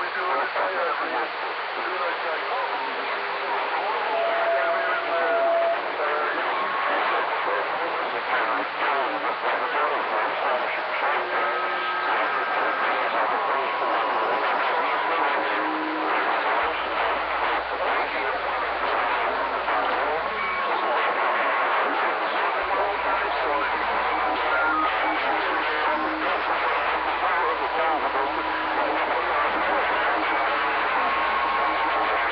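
CB radio on channel 40 lower sideband: static and garbled, unintelligible sideband voices from a crowded channel, with short steady heterodyne whistles at different pitches coming and going. A low hum joins in past the middle.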